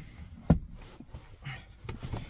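A single dull thump about half a second in as a person settles into a vehicle's third-row seat, followed by a few faint knocks and rustles of body and clothing against the seat and trim.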